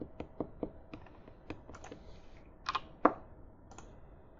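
Irregular clicking of computer keyboard keys being typed on, with a couple of louder clacks about three quarters of the way through.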